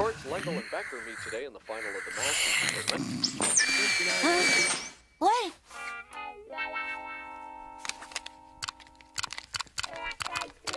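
Cartoon soundtrack: music and comic sound effects with wordless voice sounds, sliding up and down in pitch in the first half. This gives way to a held chord of steady tones, with scattered sharp clicks near the end.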